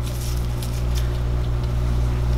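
A steady low hum with a few faint clicks and rustles of small scissors snipping into a ball python's leathery eggshell.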